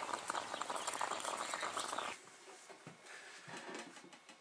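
Stainless-steel Bialetti moka pot on a camp stove, coffee bubbling and sputtering up through the spout as it brews, in a dense crackle that breaks off about halfway through, leaving only a faint hiss.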